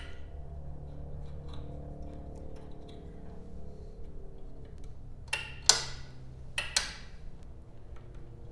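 A handful of sharp clicks from the riding mower's switch and battery terminal as a newly wired LED light bar is tried out, the loudest a little past halfway, over a low steady hum.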